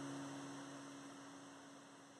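Last low notes of an acoustic guitar ringing out and fading away steadily at the end of a song.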